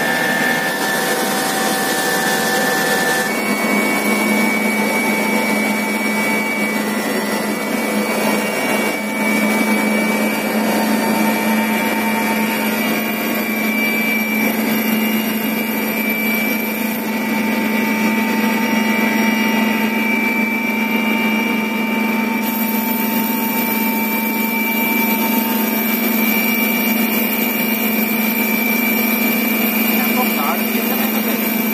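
Helicopter engine and rotor heard from inside the passenger cabin during lift-off: a loud, steady drone with a high turbine whine that rises in pitch partway through.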